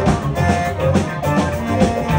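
Live band playing a funk groove: drum kit, electric guitar, bass and electric keyboard together, with a steady beat.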